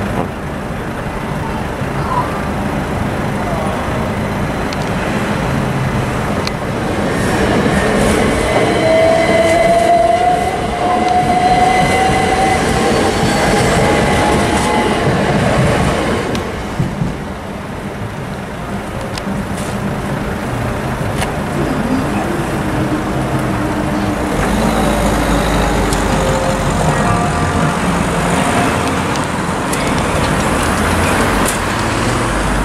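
A passenger train passes over a road level crossing, running and rumbling, with a rising whine midway through. Near the end, road traffic starts moving over the crossing.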